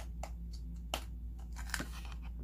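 Plastic Easter egg filled with candy being pressed shut by hand: a few small plastic clicks and rattles, the sharpest about a second in.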